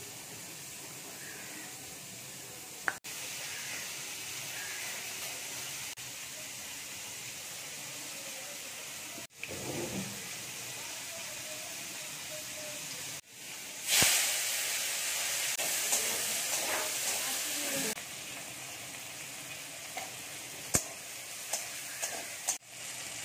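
Oil sizzling in a steel wok as whole spices and dried red chilli fry, with a louder, fuller sizzle for about four seconds in the middle.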